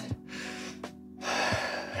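A person takes a deep, audible breath, the louder rush of air about a second in, over soft background music.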